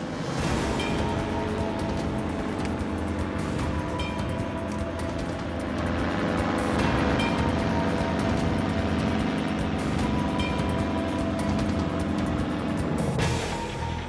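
A helicopter flying low overhead with a fast, steady rotor chop, under background music; the rotor sound fades near the end.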